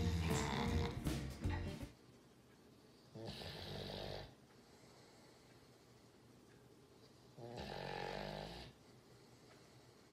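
A sleeping hound dog snoring: two long snores about four seconds apart, after background music stops about two seconds in.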